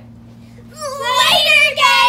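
Girls' voices letting out one long, high-pitched yell, starting a little under a second in and held, with a brief break near the end.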